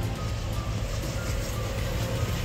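Steady highway traffic noise: a continuous low rumble and tyre hiss from vehicles on the road beside the campsite.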